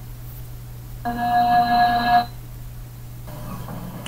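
A steady electronic tone of several fixed pitches sounds for about a second, starting about a second in, over a constant low hum.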